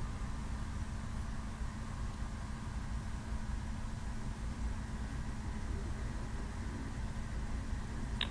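Steady low rumble and hiss of a fuelled Falcon 9 on its launch pad venting liquid-oxygen vapour, with a faint steady hum underneath.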